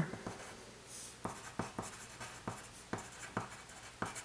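Pencil writing on paper: a run of about ten short, faint scratching strokes as a few words are written out.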